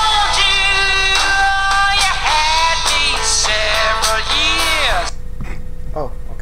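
A recorded pop song with a lead vocal singing held, gliding notes over a backing track; the song cuts off suddenly about five seconds in.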